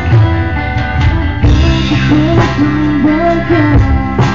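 A rock band playing live and loud, with drum kit, low bass notes and guitar. A lead melody line bends up and down in pitch through the middle.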